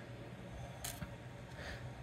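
Quiet room tone in a pause between words, with one faint short click a little before the middle and a smaller tick just after it.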